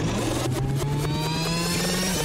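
Tape-rewind sound effect: a steady low hum with several rising whines layered over it.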